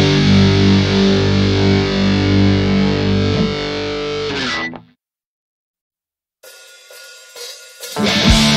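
Distorted electric guitar of a hardcore punk band holding a loud, sustained chord at the end of a song, cut off sharply about two-thirds of the way in. About a second and a half of silence follows, then a faint, thin sound starts near the end as the next track begins.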